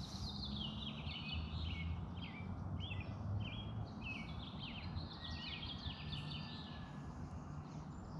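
A songbird singing long runs of quick, short chirping notes, dying away near the end, over a low steady hum and outdoor background noise.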